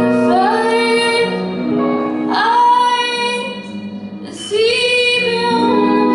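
A woman singing long held phrases, each sliding up at its start, over an acoustic guitar in a live solo performance.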